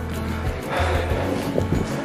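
Background music with a steady bass beat.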